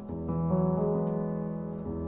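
FluffyAudio My Piano sampled upright piano playing chords in the middle register, dry with its reverb switched off; several chords are struck one after another and left to ring.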